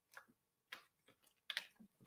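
Near silence with about four faint, short clicks and knocks as a person drinks from a glass.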